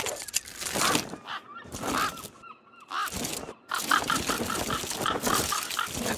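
Honking, fowl-like bird calls, turning into a fast run of short repeated notes in the second half.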